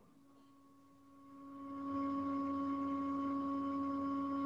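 A steady, pure-sounding tone that fades in about a second in and then holds at one pitch.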